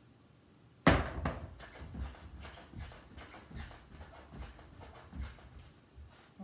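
A tennis ball lands in a plastic laundry basket with a sharp knock about a second in, followed by a run of softer, irregular thuds of sneakers landing on the floor during jumping jacks.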